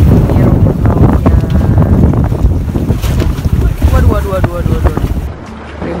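Strong wind buffeting the microphone aboard a small boat on a choppy sea, a loud, ragged rumble with brief snatches of voices. It drops away abruptly near the end.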